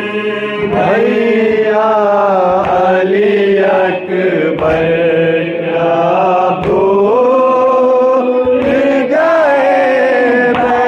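A man's voice chanting a noha, a Shia Muslim lament for Ali Akbar, into a microphone in long held notes that waver and bend in pitch.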